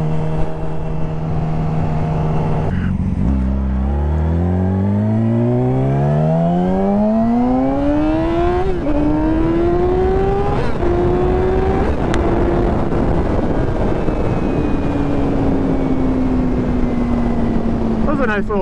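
2017 Yamaha R6's 600 cc inline-four engine accelerating through the gears. After a brief break about three seconds in, the revs climb in a long rising run, then three quick upshifts in the second half each drop the pitch. The revs settle and slowly fall as the throttle eases, with wind rush underneath.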